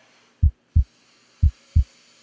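Heartbeat sound effect on the soundtrack: a deep double thump, lub-dub, repeating about once a second, heard twice, over a faint hiss.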